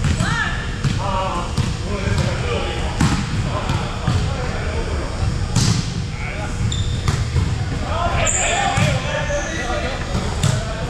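Indoor volleyball rally: irregular sharp smacks of hands hitting the volleyball and balls striking the hardwood floor, with players' voices calling and talking in a large gym.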